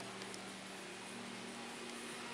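Steady low machine hum made of a few constant tones, under an even hiss: the background of a covered railway platform with a train standing beside it.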